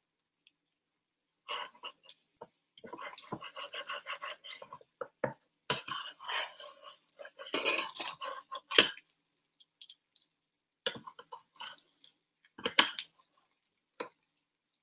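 Metal spatula scraping and tapping on an electric griddle as it works under a frying cheese crust, in short irregular bursts with a few sharp clicks.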